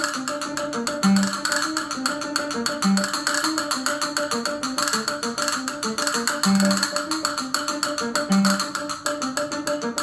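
Concert castanets played in rapid rolls, a dense, very fast stream of clicks, over an instrumental accompaniment holding pitched notes beneath.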